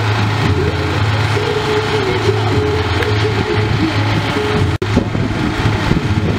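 A motor vehicle engine idling, a steady low hum, breaking off for an instant about five seconds in.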